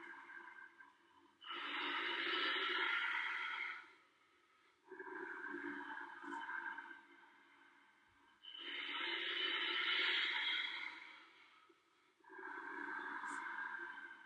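A man's slow, deep, audible breathing through the throat, in the steady rhythm of a yoga breath: four long breaths of about two seconds each, two full in-and-out cycles, with short pauses between them.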